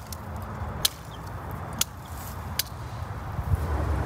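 Hand pruning shears snipping at a lime's stem: three short, sharp clicks about a second apart, over a low steady rumble.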